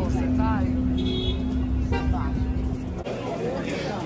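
Street traffic: a motor vehicle's engine running with a steady low hum, and a few voices over it. About three seconds in, this gives way to the chatter of a crowded room.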